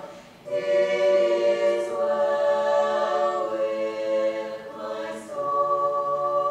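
Women's choir singing sustained chords, with a brief break between phrases just after the start and another about five seconds in.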